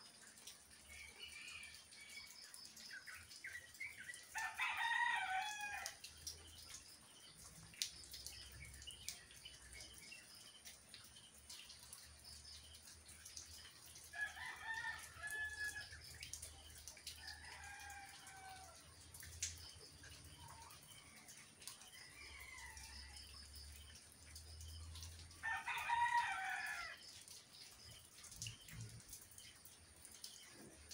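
A rooster crowing several times, each crow about one to two seconds long, over the faint hiss of moderate rain.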